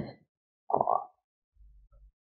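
A woman's short hesitant "uh" about a second in, with near silence around it and a few faint low thuds near the end.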